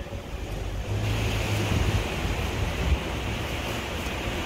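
Ford police SUV running with a steady low engine hum, under a rushing noise on the microphone.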